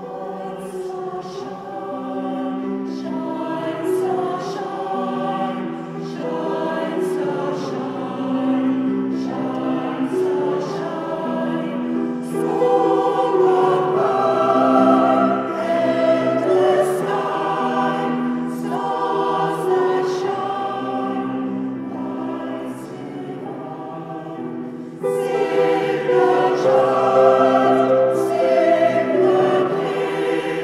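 A choir singing a sacred choral piece in sustained, many-voiced lines, growing suddenly louder about 25 seconds in.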